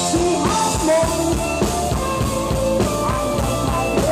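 Live rock band playing through a PA: electric guitars over a steady drum-kit beat, with a woman singing the melody.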